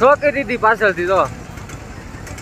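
A loud, raised voice calls out in a high pitch for about the first second, over the steady noise of road traffic. A scooter passes close by.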